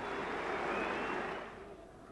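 Cricket crowd cheering and applauding a wicket, fading away about a second and a half in.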